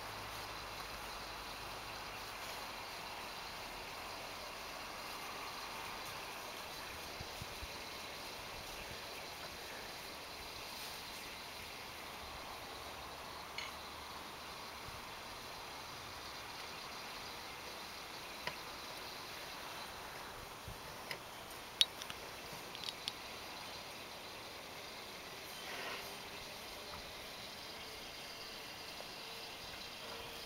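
Quiet outdoor background ambience: a steady hiss with a few brief sharp clicks about two-thirds of the way through.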